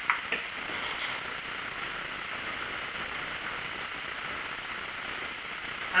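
Steady background hiss, even and unchanging, with a couple of faint clicks at the very start.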